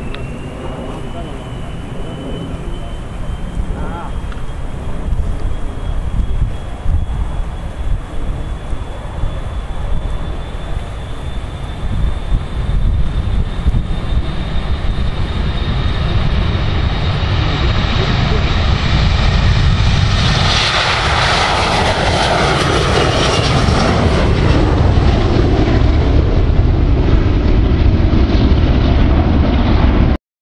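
Boeing 737-300's CFM56-3 turbofans at take-off power: a high whine that rises in pitch in the first second or so and then holds steady over a deep rumble. The sound grows steadily louder as the jet rolls, rotates and climbs away, and is loudest from about twenty seconds in.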